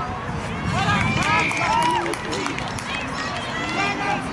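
Several high-pitched voices shouting short calls over one another during an Australian rules football match, loudest from about one to two seconds in, with a steady low rumble underneath.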